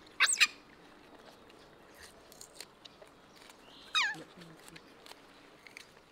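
Baby macaque giving two short, high-pitched squealing calls: one just after the start that rises and wavers, and one about four seconds in that slides down in pitch. Faint clicks of chewing and handling sit underneath.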